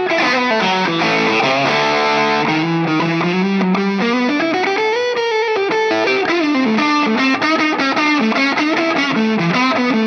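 Fender Custom Shop Tomatillo Blackguard Telecaster Relic Nocaster electric guitar played through an amplifier: a single-note lead line, with a long note bent up and let back down around the middle, then quick picked runs of short notes in the second half.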